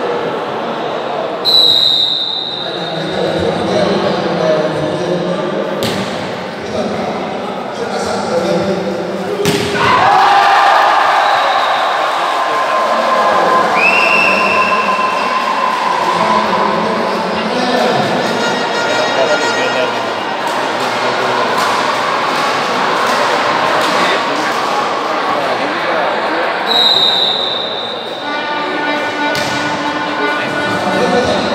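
Indoor volleyball rally: a referee's whistle blows shortly after the start, the ball is struck with sharp thuds, and from about ten seconds in spectators cheer and shout in a reverberant sports hall. The whistle sounds again around the middle and near the end.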